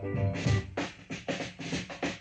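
Solo drum break on a drum kit in a hillbilly boogie record: a quick run of snare and bass-drum strokes, the loudest about half a second in, with the singing paused.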